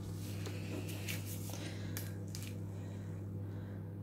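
A low, steady hum throughout, with a few faint soft clicks.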